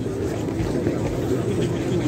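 Steady low rumbling noise on a handheld phone's microphone, mixed with indistinct voices of a crowd standing in the street.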